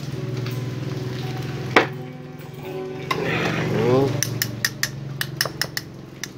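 Light metallic clicks and knocks from an electric fan's metal motor housing being handled during reassembly: one sharp knock a little under two seconds in, then a quick run of small clicks, about six a second, over the last two seconds.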